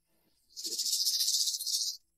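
Sound-effect sting: a high, fast-fluttering hiss that starts about half a second in and cuts off suddenly.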